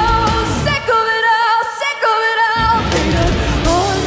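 Live heavy rock band playing loud, with distorted electric guitars, bass and drums. About a second in, the drums and bass drop out for a second and a half, leaving a high held melody with vibrato, before the full band crashes back in.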